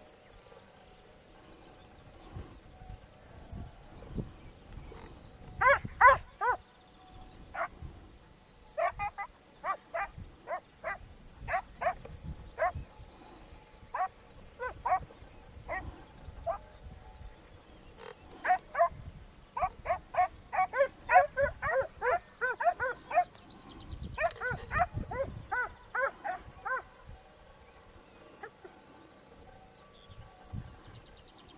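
An animal calling in short, sharp, repeated calls, in bouts of up to about three calls a second through the middle of the stretch, over a steady high drone of insects.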